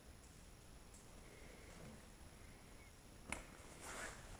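Near silence with faint rustling from a tarp panel being handled. A single sharp click comes a little over three seconds in, and a short rustle follows near the end.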